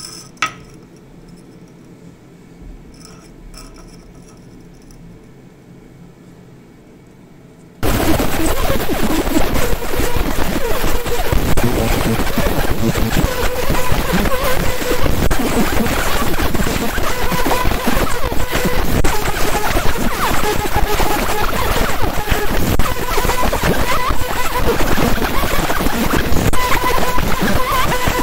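50 W JPT fiber laser marker engraving text into a fired clay shard. About eight seconds in, after quiet room tone and a single click, the laser starts firing, and a loud, dense crackling hiss of the beam ablating the clay runs on steadily with faint hums beneath.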